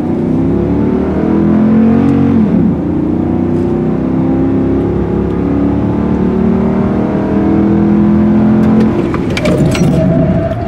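6.4-liter HEMI V8 of a Ram 2500 pickup at full throttle, heard inside the cab, its pitch rising as the truck accelerates. About two and a half seconds in the revs drop with an upshift and then climb again. Near the end the revs fall away as the driver comes off the throttle at 60 mph.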